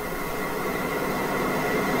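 Steady background hiss with a faint low hum, even throughout and growing slightly louder.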